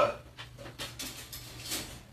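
Dog moving about inside a wire dog crate: a few faint, irregular scuffs and light rattles as it steps and turns on the crate floor.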